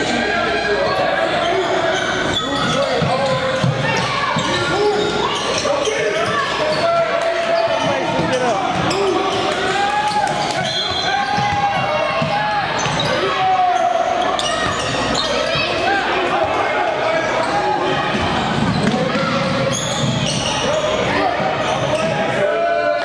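Basketball game in a large gym: a ball bouncing on the hardwood court amid many overlapping voices of players and spectators, echoing through the hall.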